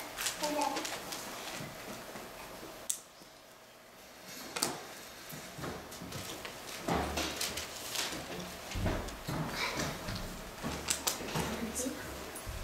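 Faint, distant speech in a room, in short broken phrases, likely someone reading aloud away from the microphone. There are a few small clicks and knocks.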